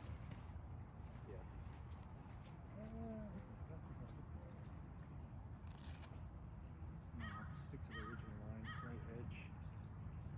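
Birds calling: one arched call about three seconds in, then a run of short calls from about seven to nine and a half seconds, over a steady low rumble of wind on the microphone.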